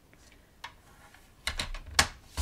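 A short run of light clicks and paper scraping from a paper trimmer as cardstock is lined up under its clear cutting arm, starting about halfway through and ending in a sharper click.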